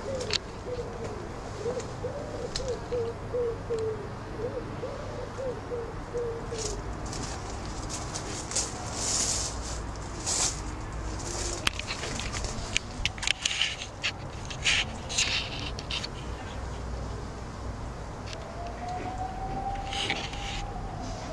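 A pigeon cooing in a repeated low phrase over the first several seconds, followed by short crackling rustles of leaves and twigs in the middle.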